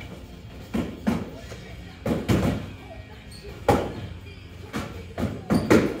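Foam-padded LARP swords and shields striking each other and the fighters in fast sparring: a run of dull, irregular thuds and slaps, several in quick pairs, echoing in a large hall.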